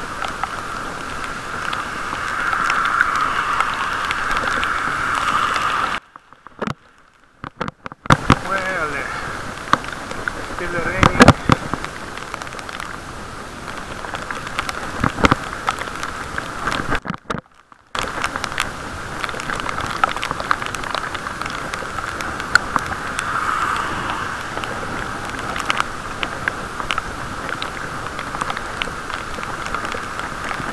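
Muffled, steady noise of a bicycle riding in the rain, with wet tyre and wind noise heard through a camera's waterproof case. There are a few knocks from bumps about eleven seconds in. The sound cuts out almost completely for about two seconds a quarter of the way in, and again briefly past the middle.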